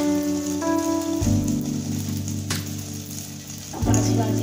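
Pitha batter deep-frying in hot oil in an iron kadai, a steady fine sizzle, heard under background music with held notes that change about every second.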